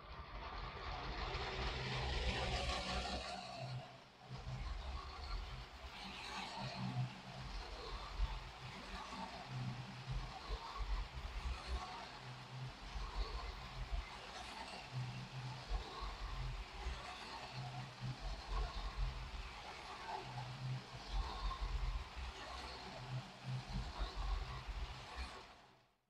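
Lego City 60337 express passenger train running at full speed around a plastic track on a wooden tabletop: a steady whirring rattle over a low rumble carried by the table. It swells and fades again and again as the train circles, and fades out near the end.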